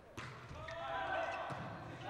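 A volleyball being struck twice in an indoor gym, once just after the start and again about a second and a half in, over faint players' voices.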